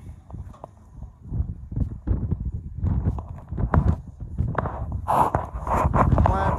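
Irregular knocks and scuffs, growing louder over the first couple of seconds.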